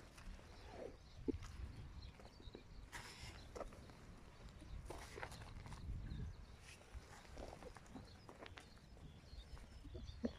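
Faint, irregular soft knocks and scuffs of young lambs' hooves on grass and gravel as they hop and skip about, over a low rumble.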